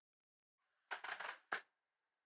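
Vape mod firing a rebuildable dripping atomizer as he draws on it: the coil sizzles and crackles faintly for about half a second starting a second in, then gives one sharp pop.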